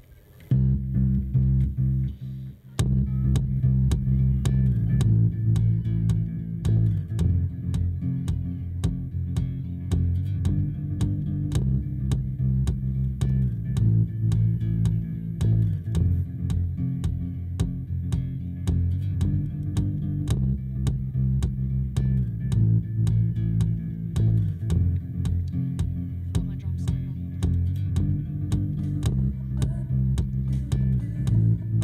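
Amplified acoustic guitar starting a song, heavy in the low notes, with a brief break about two seconds in and sharp clicks running through the playing.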